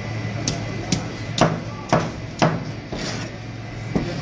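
Knife scraping scales off a large red snapper held up by the tail: a run of sharp scraping strokes, about two a second. Near the end there is one more knock as the fish is laid down on the wooden board.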